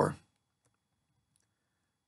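A man's voice trails off at the very start, then near silence with a couple of very faint clicks.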